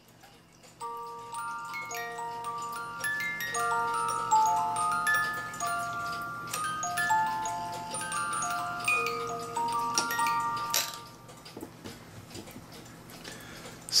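Black Forest cuckoo clock's cylinder music box plucking a tune on its steel comb, the notes ringing on, starting about a second in and ending about two-thirds of the way through, with a sharp click shortly before the end. The comb's teeth are worn from much playing, and the comb has been set closer to the cylinder so it plays.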